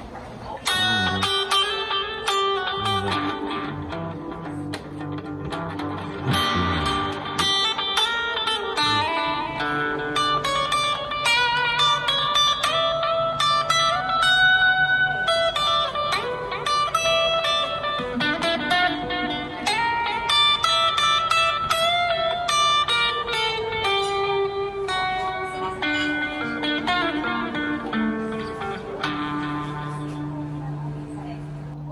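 Electric guitar playing a slow blues instrumental: single picked lead notes, some bent upward in pitch, over lower sustained notes.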